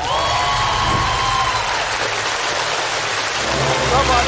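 Studio audience applauding and cheering for a correct quiz answer, with one long held shout from a voice in the first second and a half.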